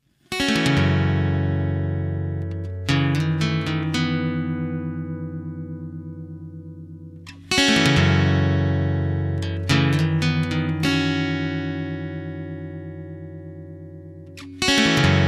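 Instrumental song intro on guitar: sustained chords struck about five times, each left to ring out and fade slowly, with a slight pulsing in the ringing.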